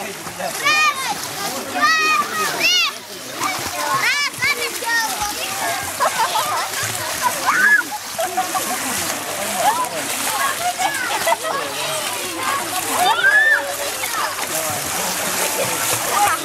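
Children splashing in a swimming pool, with a steady wash of water noise throughout. Over it, children shout and squeal in high voices, most often in the first few seconds.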